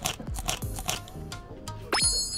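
Close-up chewing of slices of pickled Japanese radish (konomono), a quick run of irregular crisp crunches.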